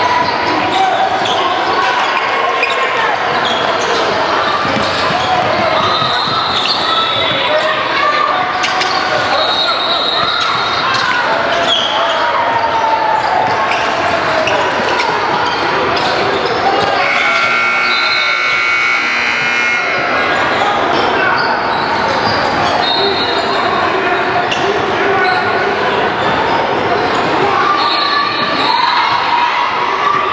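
Basketball gym sounds: the ball bouncing on the hardwood floor, sneakers squeaking and indistinct voices of players and spectators, echoing in a large hall. About 17 seconds in, a steady electronic scoreboard horn sounds for about three seconds, the buzzer at the game clock running out.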